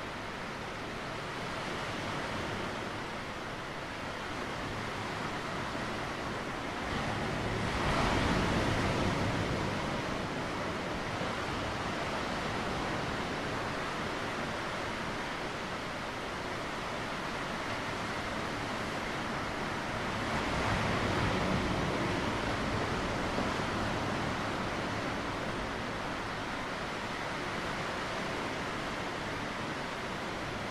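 Sea waves washing onto a rocky shoreline: a steady rush that swells louder about eight seconds in and again around twenty-one seconds as bigger waves break.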